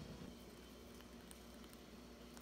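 Near silence: room tone with a steady low hum and a couple of faint ticks.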